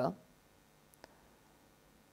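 A woman's voice trailing off, then near silence with a faint steady low hum and a single faint click about a second in.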